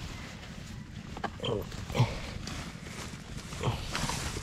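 Dry grass and leaves rustling as a small wire-mesh trap is handled and pulled out of the undergrowth, with a few short, sudden noises about one and two seconds in.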